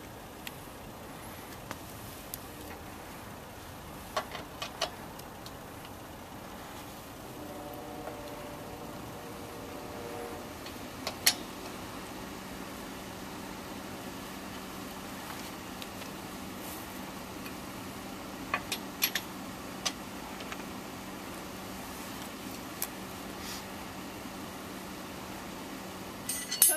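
Scattered metallic clicks and clinks of a lug wrench on a car's wheel nuts as they are tightened, the loudest about eleven seconds in. Under them runs a steady low hum, joined by a steady low tone about eleven seconds in.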